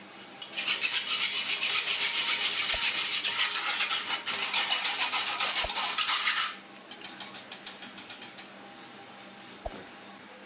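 Wire whisk rubbing against a stainless steel mesh strainer in quick back-and-forth strokes, pushing pandan batter through the sieve: a steady, loud rasping that stops about six and a half seconds in, then a lighter, faster run of strokes that ends shortly after.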